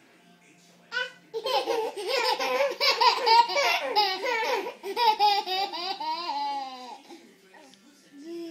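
A baby's belly laughter, a long run of high giggling pulses starting about a second and a half in and tailing off near the end.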